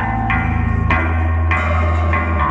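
Live noise-rock band playing: a low, held amplified string note that drops to a new pitch about a second in, under sharp, ringing struck hits about every half second.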